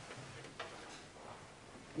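A pause of near-quiet room tone with a few faint clicks and soft rustles of paper pages being handled on a wooden lectern.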